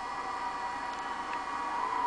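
Steady background sound from a television carrying cricket coverage, between commentary lines: an even band of noise with faint steady high-pitched tones.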